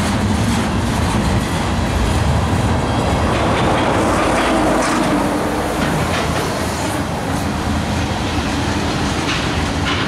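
A freight train's green high-side gondola cars rolling steadily past at trackside, steel wheels rumbling on the rails, with a few sharper clacks near the end.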